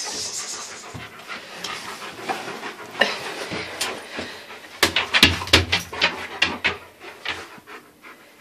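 German Shepherd–Alaskan Malamute mix dog panting in quick, rhythmic breaths, loudest about five seconds in.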